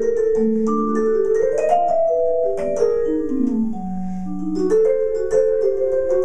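Jazz vibraphone played with mallets: struck notes and chords that ring on and overlap. About three seconds in, a line of notes steps downward into the low register; fuller chords return near the end.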